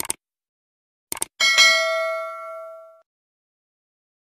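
Subscribe-button sound effect: two quick mouse clicks, then about a second later two more clicks and a bright notification-bell ding that rings out and fades over about a second and a half.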